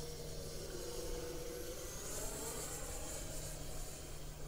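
Arrows F-15 model jet's twin 64 mm electric ducted fans whining in flight. The high whine swells about halfway through and eases near the end.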